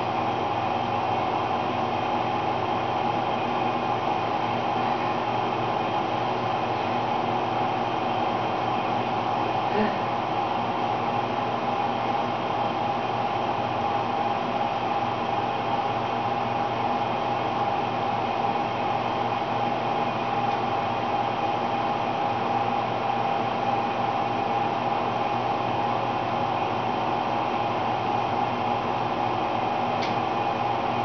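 Steady machine whirring hum with several held tones, with one short click about ten seconds in.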